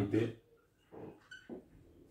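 Whiteboard marker writing: short scratchy strokes and a brief high-pitched squeak about a second in, after a man's voice trails off at the start.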